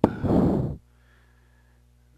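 A person's short, loud breath out close to the microphone, lasting under a second, followed by a faint steady low hum.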